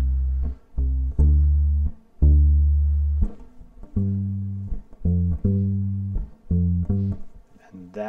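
Electric bass with flatwound strings played solo, one plucked note at a time: a few long, low notes left to ring in the first half, then a quicker alternation between two higher notes in the second half.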